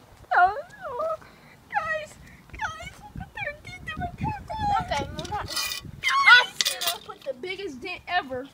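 Voices making drawn-out wailing, whining sounds with no clear words, the pitch sliding up and down, with a couple of short hissing breaths a little past the middle.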